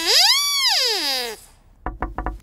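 A smooth whistling tone that glides up in pitch and slides back down over about a second and a half, followed by a few short sharp knocks near the end.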